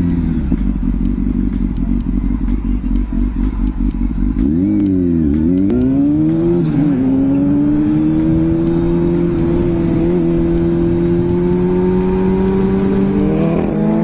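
Motorcycle engine heard from the rider's position over a low rumble, its pitch dipping and climbing again twice about five seconds in, then holding a high, slowly rising note as the bike keeps accelerating. A background music track with a fast, steady beat runs underneath.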